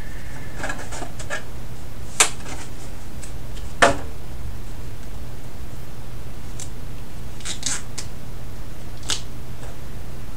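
Scissors snipping at material in short, scattered cuts, with two sharper snips in the first four seconds and a few lighter ones later, over a steady low hum.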